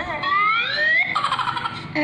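A high-pitched human voice wailing, rising steadily in pitch for about a second, then breaking into a rapid pulsing cry, heard from a phone's speaker.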